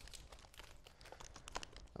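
Faint rustling and crinkling of small paper slips being unfolded by hand.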